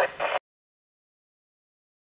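Amateur radio transceiver hissing with FM receive noise, cut off abruptly less than half a second in, then total silence.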